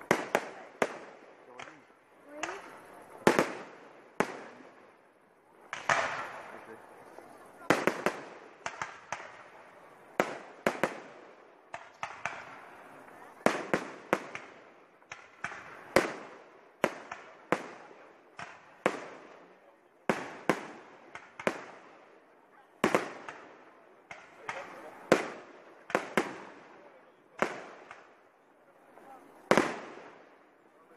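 Fireworks display: aerial shells bursting one after another at roughly one sharp bang a second, irregularly spaced, some in quick pairs, each trailing off in a short echoing tail.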